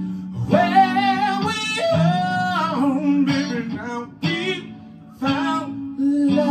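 A man singing long, wavering held notes over strummed clean electric guitar chords. In the second half the voice drops away and the guitar carries on with spaced-out chord strums.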